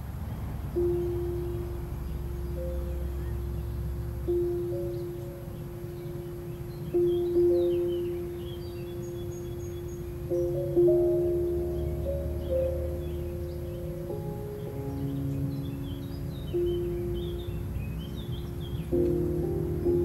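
Slow, gentle classical piano music, muffled as if playing in another room, with single held notes struck every few seconds. Birds chirp faintly through the middle and toward the end, over a low, steady rumble of street noise.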